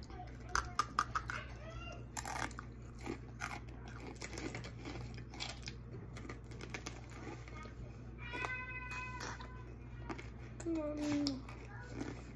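Crisp crunching and chewing of a raw mini sweet pepper being bitten and eaten, a run of sharp crackles that thins out after the first few seconds. A short high-pitched call sounds about eight seconds in, and a child says "Mommy" near the end.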